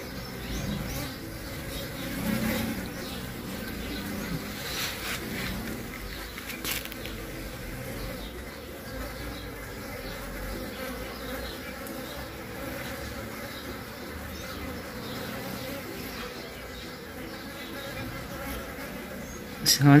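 Mandaçaia stingless bee drones buzzing as they fly close around a queen on the ground, drawn by her scent. The hum is steady and swells now and then.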